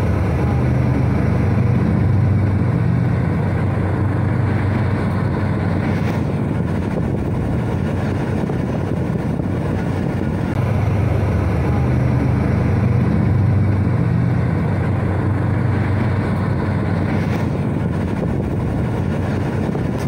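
Pakistan Railways diesel locomotive and its passenger coaches passing close by, a loud, steady low rumble of engine and wheels on the rails.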